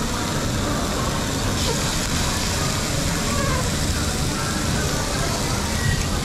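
Busy restaurant dining room ambience: a steady rushing background noise with indistinct chatter of diners under it.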